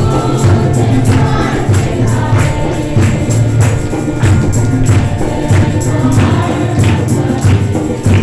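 A congregation singing a Hindi worship song together, over a steady percussive beat of about two strikes a second.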